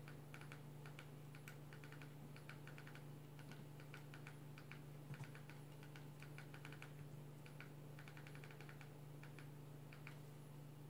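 Faint, quick clicks in short runs of several at a time, from a Nexus Player remote's buttons being pressed to step across an on-screen keyboard and key in a Wi-Fi password letter by letter. A steady low hum lies under them, with one soft thump about five seconds in.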